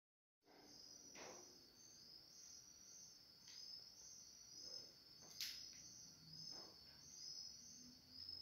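Faint, high-pitched insect chirping in short, evenly repeated pulses, with a few soft clicks; the sharpest click comes about five seconds in.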